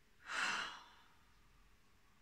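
A person's single audible sigh: one breathy exhale of about half a second, shortly after the start.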